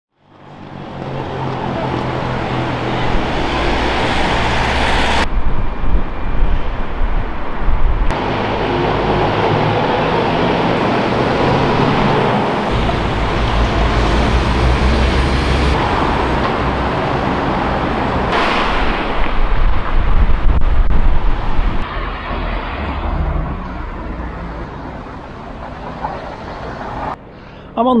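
Road traffic on a busy city street: cars and a double-decker bus passing, with steady engine rumble and tyre noise. It fades in over the first second or so and changes abruptly a few times.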